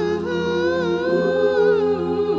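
Mixed choir singing a cappella: the lower parts hold a steady hummed chord while a higher line sustains and wavers above it.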